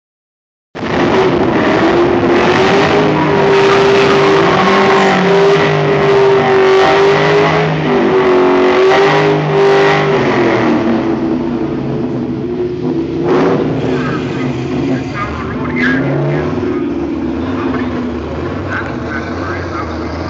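Car engine held at high revs during a drag-strip burnout, spinning the rear tyres to heat them, with a steady, slightly wavering note over tyre noise. About halfway through the revs come down and the engine settles to a lower, weaker note.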